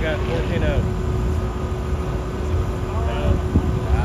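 Low, steady rumble of engines idling as a pickup and a car sit staged on the drag-strip start line, with a steady hum over it. Voices talk nearby in the first second and again about three seconds in.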